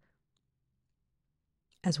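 Near silence, then a narrator's voice begins near the end.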